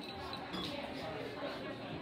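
Indistinct chatter of several people in a large gym hall, with a soft thump about half a second in.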